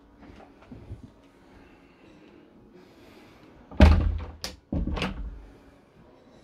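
A motorhome's interior washroom door being handled: a few light knocks, then two loud thuds about a second apart.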